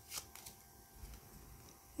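Faint rustling and a few light clicks of tarot cards being handled as a card is drawn from a hand-held deck, most of them in the first half-second.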